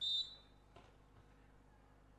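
Referee's whistle: one short, high blast lasting about a third of a second, the signal that authorises the serve.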